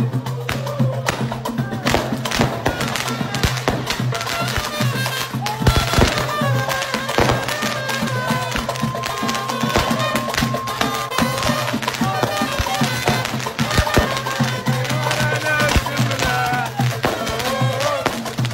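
A group of people singing a chant together over a steady drumbeat, with many sharp hits throughout.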